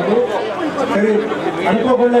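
Speech only: a man speaking into a hand-held microphone.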